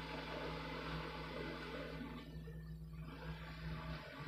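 Faint room tone: a steady low hum with light hiss.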